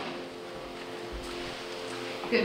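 Last chord of a song from piano and guitars held and slowly dying away, with a sharp click right at the start and a few dull low thumps about a second in.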